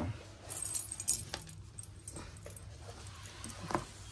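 Small plastic spoon scraping and clicking against a plastic spice box as spice powder is scooped out and spooned onto fish. The clicks are light and scattered, with the sharpest near the end.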